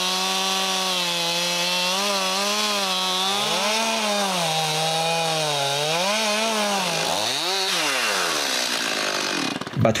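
Gas chainsaw ripping a log lengthwise along a guide to square it into a 6x6 beam, its engine held at high revs that sag and recover a few times under the load of the cut. Near the end the throttle is let off: the revs fall, flare once more, and die away about a second before the end.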